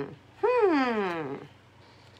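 A woman's voice humming a long sliding 'hmm' of about a second that rises briefly and then falls steadily in pitch, at the tail of a similar falling hum.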